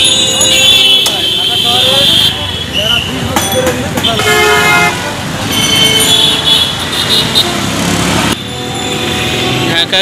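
Busy street traffic of cycle rickshaws and motor vehicles, with horns sounding several times over a constant din and people's voices mixed in.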